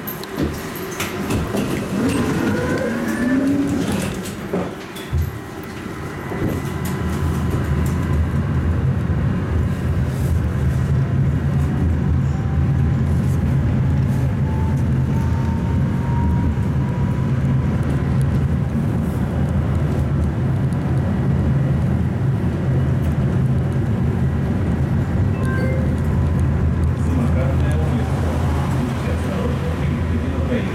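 Inside a moving Tatra T3 tram car: a loud, steady low rumble of the wheels and running gear on the rails. There are rising whines in the first few seconds, and a faint motor whine climbs slowly in pitch through the middle as the tram gathers speed.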